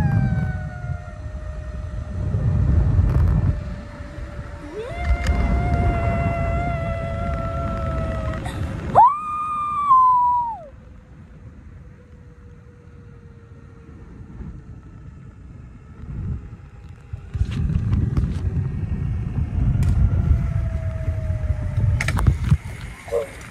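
Zipline trolley running along the steel cable with a whistling whine that slowly falls in pitch, over gusts of wind rumbling on the phone's microphone. A louder whistle rises and falls about nine seconds in.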